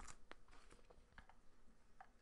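Near silence, with a few faint light ticks of trading cards being handled and picked up.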